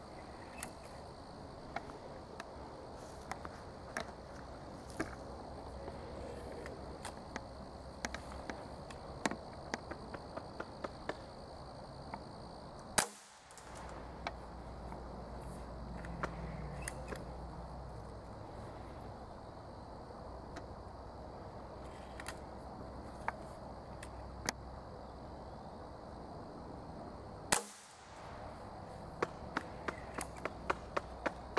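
Two shots from a Beeman spring-piston break-barrel pellet rifle, each a single sharp crack, the first a little under halfway through and the second near the end. Small clicks are scattered between them.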